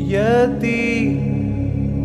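Background music: a solo voice chanting in an Indian devotional style over a steady drone, sliding up in pitch and then holding a note.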